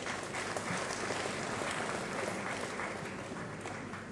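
Audience applauding: a steady patter of many hands clapping that fills out in the first second and slowly thins toward the end.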